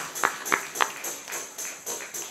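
Tambourine jingles shaken and struck in a steady rhythm, about three to four beats a second, the strikes loudest in the first second.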